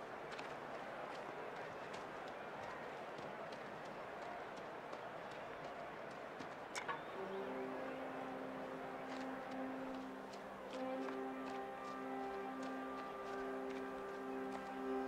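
Steady murmur of a stadium crowd with scattered light clicks and one sharp knock about seven seconds in. Right after the knock, a film score starts with long held notes and builds.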